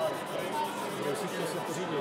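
Faint chatter of people in a large hall, with a soft, scratchy rubbing of a flexible sanding sponge being worked over a wet plastic model wing.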